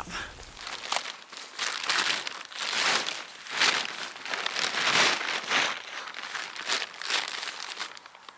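Synthetic tent fabric of a single-skin Eurohike tent crinkling and rustling as it is handled for pitching, in irregular bursts.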